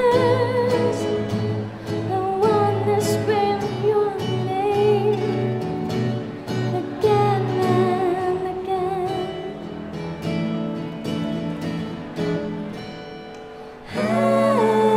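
A woman singing a slow song with long held, wavering notes, accompanied by a plucked acoustic guitar. The music grows quieter toward the end.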